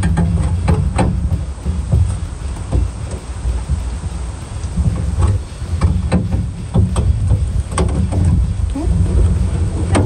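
Needle-nose pliers and a plastic grille retaining clip clicking and knocking at scattered moments as the clip is squeezed and worked loose, over a heavy low rumble of wind buffeting the microphone.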